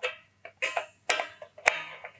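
A screwdriver turning the tremolo claw screws in the back of a Stratocaster gives several sharp metallic clicks and ticks, a few with a short ring. The screws are being loosened to ease the tremolo spring tension so the bridge can drop into a floating position.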